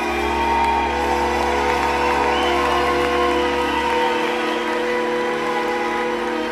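Live orchestral music blended with modular synthesizer: sustained held chords over a deep bass note that drops out about four seconds in.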